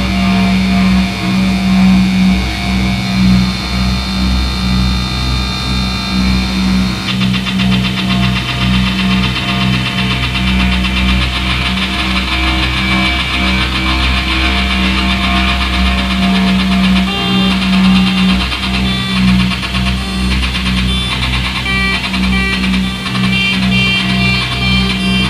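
Loud electronic noise music: a pulsing drone near 200 Hz over a low rumble, with dense buzzing, glitchy upper textures. About seven seconds in, a fast stuttering pattern enters up high, and stepped, flickering tones follow near the end.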